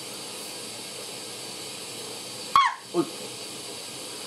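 Steady low room hiss, then about two and a half seconds in a short, high-pitched yelp that drops in pitch, followed at once by a lower, surprised "oj".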